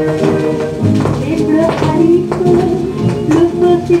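A 1938 Pathé 78 rpm shellac record playing an orchestral passage of a French dance-band song, with held melody notes and sharp rhythmic accents about twice a second.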